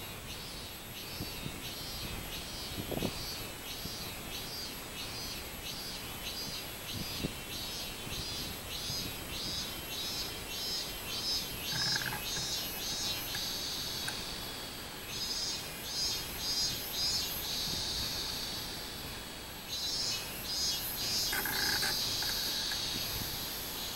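Robust cicada (minminzemi) singing its pulsed 'min-min-min' song, about two notes a second, which quickens and runs together into a drawn-out buzz, then starts again; this happens twice.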